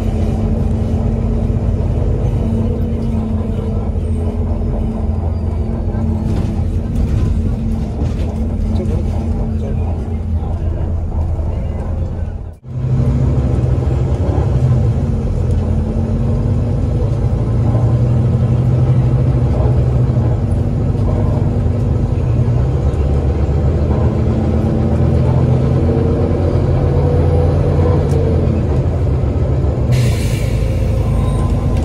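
Volvo B9TL double-decker bus's diesel engine and Voith automatic gearbox heard from inside the upper deck, running under load as the bus drives, its pitch shifting with the gears and rising near the end. The sound drops out briefly a little before halfway.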